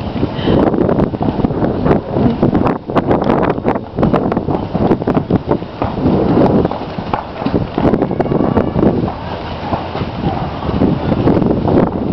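Horse-drawn carriage rolling along a paved street: a steady rumble and rattle from the wheels and carriage, with irregular clops and knocks, and wind buffeting the microphone.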